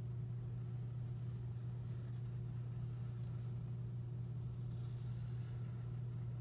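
Pencil drawing lightly on paper, a faint scratching that grows a little stronger near the end, over a steady low hum.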